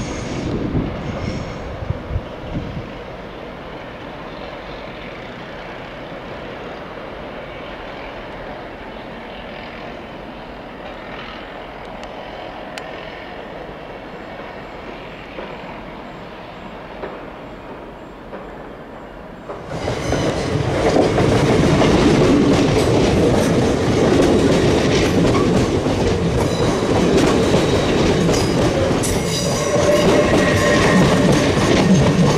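A moderate, even rumble of distant trains moving around the station, with a few sharp squeals or clanks at the start. About two-thirds of the way in this gives way suddenly to the much louder sound of an LNER Class 800 Azuma passing close by, with its wheels clattering over the rail joints.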